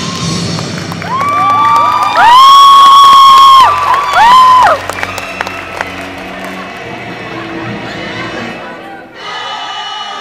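Several people shrieking at once: high screams that rise and then hold, overlapping and loud, from about one second in until nearly five seconds, over recorded stage music that carries on after them.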